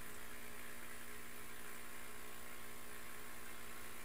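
A steady low electrical hum over a faint hiss, unchanging throughout, with no distinct event.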